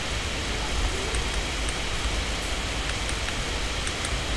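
Steady hiss of background noise, with a few faint clicks of the radio transmitter's menu keys being pressed as the setup screen is scrolled.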